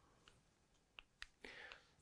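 Near silence: room tone, with two faint short clicks about a second in and a faint soft sound just before speech resumes.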